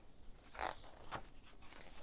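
Paper pages of a picture book being turned by hand: two short rustling swishes, about half a second in and again just after a second.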